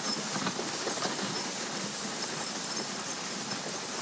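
A dog sled gliding over packed snow: the steady hiss and scrape of the runners, with the soft footfalls of the running husky team.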